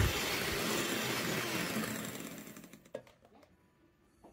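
Electric hand mixer running at high speed with its beaters in stiff whipped cream, a steady whir that fades away under three seconds in, followed by a single faint click.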